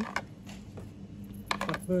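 A stack of small coffee-serving trays being handled and shuffled, with a quick cluster of clacks of tray against tray about one and a half seconds in.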